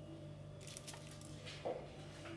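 Faint squishing and rustling of hands working soft minced meat and laying shaped kofta on a plastic-covered tray, with a light tap near the end.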